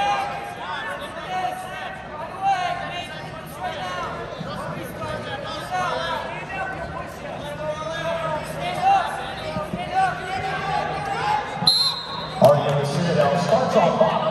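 Wrestling shoes squeaking and bodies thudding on a rubber wrestling mat during a live bout, with voices calling out around the mat. A short high whistle sounds near the end, followed by louder shouting as the wrestlers break apart.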